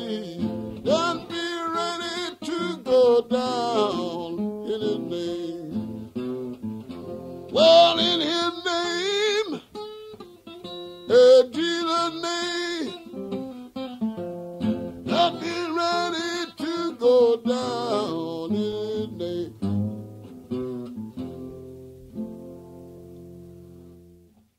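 Fingerpicked acoustic blues guitar with a man singing over it. The piece ends near the end with a last chord ringing out and fading away.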